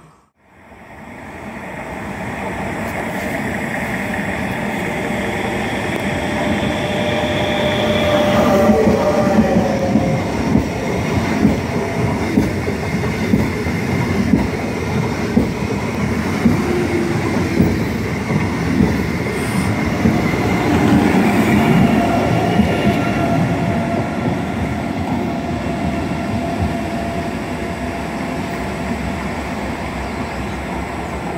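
Renfe Alvia passenger train running past close along a station platform: a steady rumble of wheels on rail with a rhythmic clack about once a second as the wheelsets cross a rail joint. A high whine sits over the rumble until about eight seconds in.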